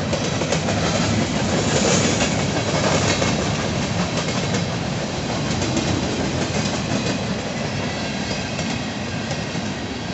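Freight train cars rolling past: a steady rumble of steel wheels on rail, with the wheels clicking over the rail joints.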